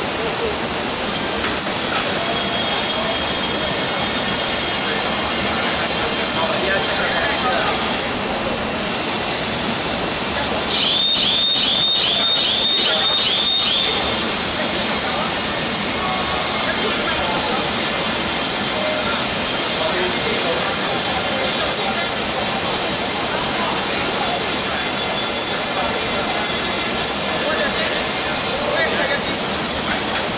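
Steady loud roar of a steel foundry's melting shop, with the melting furnace running and large wall exhaust fans, and thin steady high whines over it. About a third of the way in, a quick run of about eight sharp clinks.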